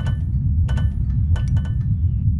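Sound-design intro sting for a music segment: a steady deep rumble with about four sharp clinks that ring briefly above it.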